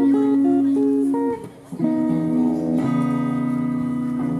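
Solo guitar playing ringing strummed chords in an instrumental passage between vocal lines. The chords sound out, drop away briefly about one and a half seconds in, then a new chord is struck and rings, changing again just before three seconds.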